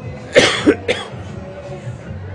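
A person coughing: one loud cough about a third of a second in, followed quickly by two shorter coughs.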